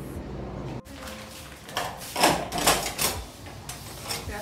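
Several sharp knocks and rattles in quick succession, typical of a door being unlatched and pulled open, with the phone being moved about.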